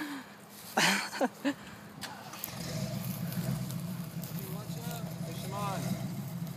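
A vehicle engine comes in about two and a half seconds in and runs on as a steady low drone.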